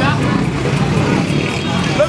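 Busy street-market din: overlapping voices of passers-by and traders over running vehicle engines, steady throughout.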